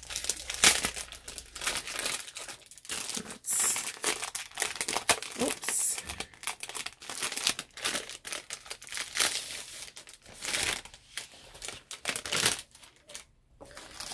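Irregular crinkling and rustling as a diamond-painting kit's packaging and rolled canvas are taken out and handled, with a few louder crackles.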